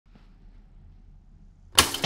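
Faint low hum of a quiet room, then a sudden loud burst of noise near the end that dies away quickly.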